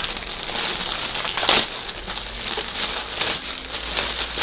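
Plastic mailing bag crinkling and rustling as it is handled and opened, with sharp crackles throughout. The loudest crackle comes about a second and a half in.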